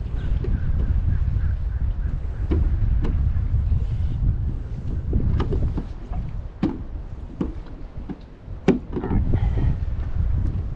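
Wind buffeting the microphone in a low rumble that eases off for a couple of seconds past the middle. Scattered sharp knocks run through it, the loudest near the end.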